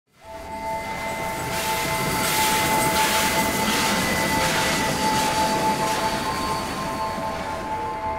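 Sound effect for an animated logo intro: a steady held chord of tones that fades in at the start, with a hissing, crackling swell in the middle that dies away.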